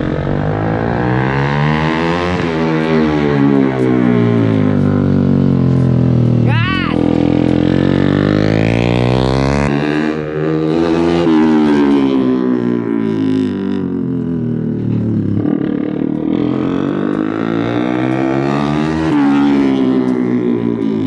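Small motorcycle engine revving up and dropping back again and again as the bike accelerates and slows, its pitch climbing and falling every few seconds.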